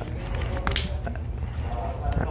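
Trading cards being picked up off a playmat and handled, a few light clicks and rustles, over a steady low hum of room noise.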